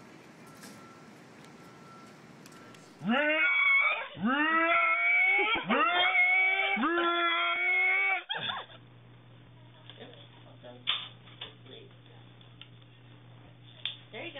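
A man's voice giving a run of about five loud, drawn-out cries, each rising in pitch and lasting about a second, for some five seconds; after they stop, a steady low hum with a few faint clicks.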